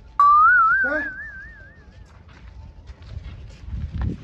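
A loud whistle cuts in suddenly, slides upward, then warbles up and down and fades away over about two seconds.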